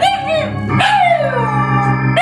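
A Shiba Inu howling along to a sustained organ chord played on an electronic keyboard. A short howl comes at the start, then a longer one about a second in that slides down in pitch.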